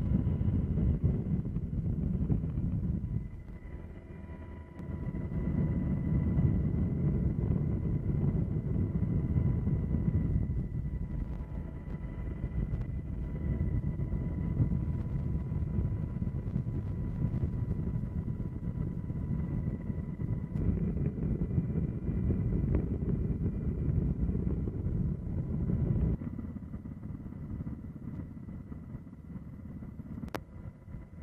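Steady low rumble with wind buffeting the microphone and a faint steady whine above it. It dips briefly about three seconds in and grows quieter near the end.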